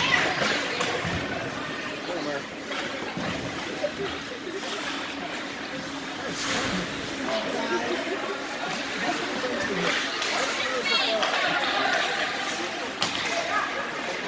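Ice hockey rink sounds during play: scattered voices of players and spectators calling out, over the scraping hiss of skate blades on the ice, with a few sharp knocks.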